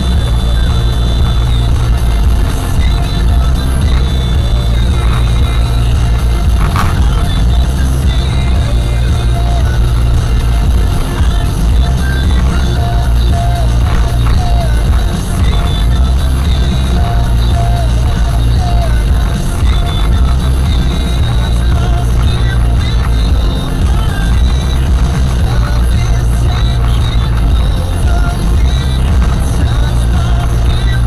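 A song with a steady bass playing loudly on the car radio, heard inside the cabin over motorway road noise.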